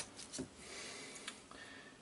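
Faint, soft handling sounds as a pin is pressed through model track ties into a foam base, with a brief low soft sound about half a second in.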